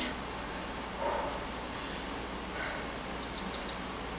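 Workout interval timer giving three short high beeps about three seconds in, signalling the end of the exercise interval, over a low steady room hum.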